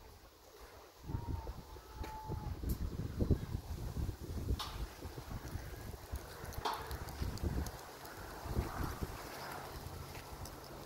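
Gusty wind buffeting the microphone, with a few sharp clicks about four and a half and six and a half seconds in.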